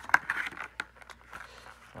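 Clear plastic blister packaging crinkling and clicking as it is handled: a string of irregular sharp clicks and rustles, the loudest just after the start.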